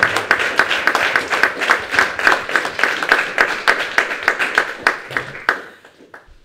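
Audience applauding with many hands clapping, dying away near the end.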